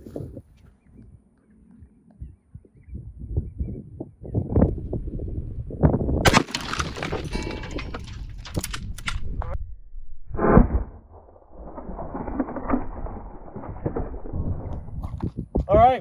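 A single Mosin-Nagant rifle shot in 7.62x54R about six seconds in, sharp and echoing, fired into concrete rumble stones. It is followed by more sharp cracks and a heavy thud about ten seconds in.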